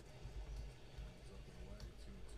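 Faint commentator speech from a televised baseball broadcast playing in the background, over a low steady hum.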